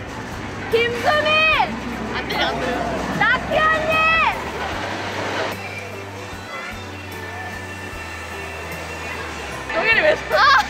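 Two long, high-pitched screams, the first about a second in and the second a little after three seconds, each sliding up and then falling away at the end, over steady background music.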